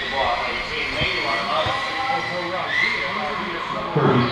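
Indistinct voices talking, over a faint steady high whine from radio-controlled stock cars running on the track, rising briefly near the end.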